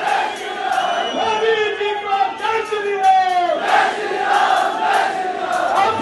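A large crowd shouting and cheering, many raised voices overlapping at once.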